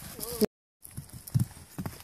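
Horse cantering on grass: dull, low hoofbeats. The sound cuts out completely for a moment about half a second in.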